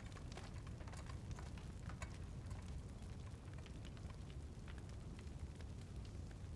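Faint, irregular crackling of open fires in braziers over a low steady rumble.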